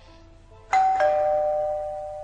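Two-tone doorbell chime: a higher note about two-thirds of a second in, a lower note right after, both ringing on and slowly fading.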